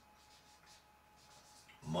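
A felt-tip marker writing on a paper chart sheet: faint, short scratching strokes as a word is written out.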